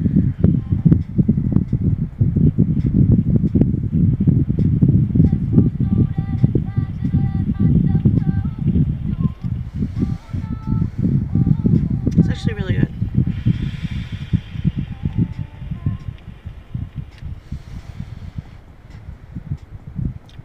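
Music from a car radio, a bass-heavy song with a steady beat and sung or rapped vocals, easing off slightly near the end.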